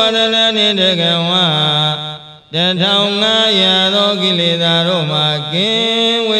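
A Buddhist monk chanting Pali paritta verses in one sustained, melodic voice. He breaks off for a breath about two seconds in, then carries on.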